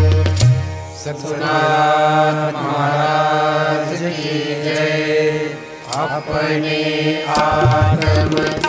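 Devotional bhajan music. Drum strokes sound in the first second and again near the end, and long held melodic chant notes fill the middle, with one note gliding upward about six seconds in.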